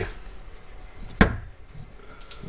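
A single sharp knock about a second in, with faint room noise around it, from the metal feeding tongs holding the rat.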